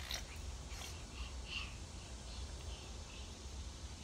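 Faint outdoor background: a steady low rumble with a few faint, brief bird chirps about a second or so in.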